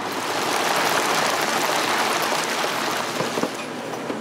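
Street traffic: the rushing hiss of a vehicle passing on the road. It swells over the first second or so and slowly fades.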